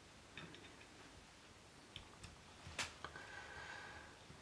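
Near silence: room tone with a few faint clicks, the loudest about three seconds in, and a faint steady high tone in the last second.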